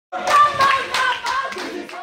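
A group of protesting students clapping in a steady rhythm, about three claps a second, with raised voices over the claps.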